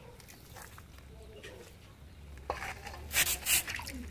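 Raw, gutted chicken being handled over an aluminium bowl: soft wet handling sounds, then a run of loud noisy bursts about two and a half to three and a half seconds in, the two loudest close together near the end, as the carcass is moved into the bowl.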